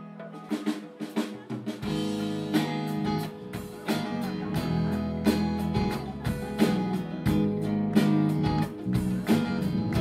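A live rock band playing: electric and acoustic guitars, drum kit and hand percussion, recorded on the camera's own microphone. The song starts sparse, with drum hits coming in about half a second in and the full band with bass joining about two seconds in, then it carries on at a steady groove.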